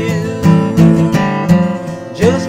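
Acoustic guitar strummed in a steady rhythm, about three strums a second. The end of a held, wavering sung note fades out about half a second in.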